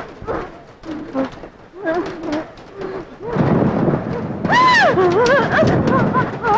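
Heavy rain falling, with a rumble of thunder building from about three seconds in. Over it, a dog barks repeatedly, loudest about two-thirds of the way through.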